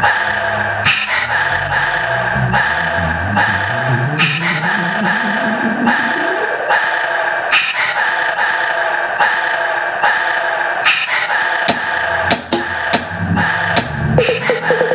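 Electronic beat played live on a hardware sampler: a looping sample holds a steady chord, with a sharp hit about every second and a half. A rising pitch sweep comes in midway, and a run of quick, stuttering hits follows near the end.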